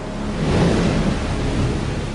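Large ocean wave breaking: a loud rush of surf noise that swells about half a second in and holds.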